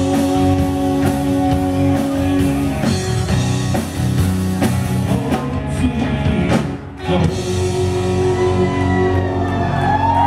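Live rock band playing on electric guitars, bass and drum kit, with held guitar notes at first and a brief drop in the sound about seven seconds in.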